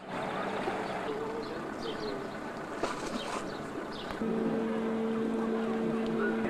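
Outdoor sound of a passenger ship under way in a canal: a steady rumble of noise with a few short bird chirps. About four seconds in, a steady low hum starts and holds.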